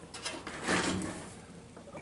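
Brief soft rubbing and handling sounds, two short scrapes, the second about three quarters of a second in.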